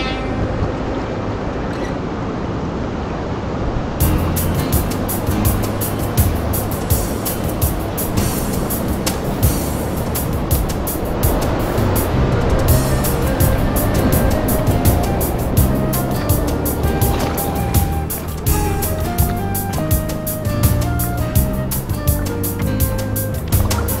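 Background music: an upbeat track whose steady drum beat comes in about four seconds in, with a stepping melody over it later on.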